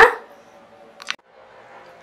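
A woman's spoken word trailing off right at the start, then quiet room tone with one brief click about a second in.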